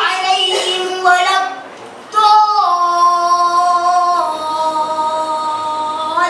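A boy reciting the Quran in a melodic chant into a microphone. About two seconds in he takes a short breath, then draws out one long held note that steps down in pitch twice.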